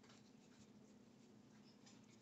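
Near silence: faint scratching and rubbing of yarn being worked on a metal crochet hook, over a low steady hum.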